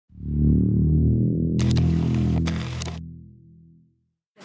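Intro sting: a low synthesizer chord swells in and slowly fades away. A burst of clicking and hiss sounds over it from about one and a half to three seconds in.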